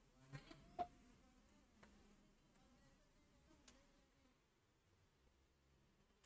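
Near silence, with a few faint clicks of a stylus on an interactive whiteboard as digits are written.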